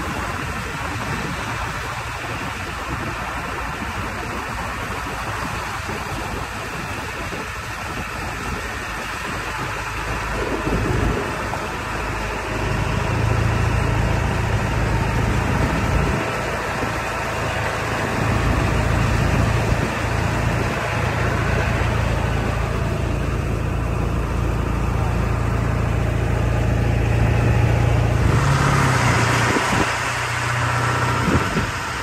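A vehicle driving slowly along a gravel quarry road, heard from inside: steady engine and road noise, with the engine drone growing stronger about twelve seconds in and holding. A rushing noise rises near the end.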